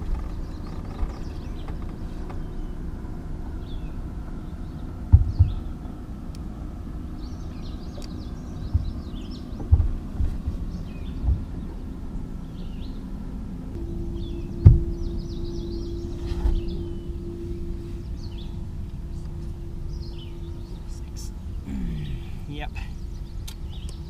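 Electric trolling motor on a bass boat running with a steady hum, its pitch stepping up about halfway through. Several dull knocks sound on the boat along the way.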